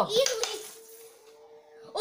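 A child's voice briefly at the start, then a quiet room with a faint steady hum.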